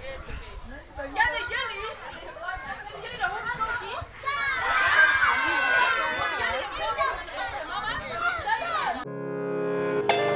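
A crowd of children's voices talking and calling out, growing louder and denser about four seconds in as many voices call out together. Just after nine seconds it cuts off abruptly into soft background music with long held notes.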